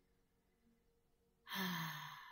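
Near silence, then about one and a half seconds in a woman lets out a breathy, voiced sigh that falls in pitch and lasts about a second.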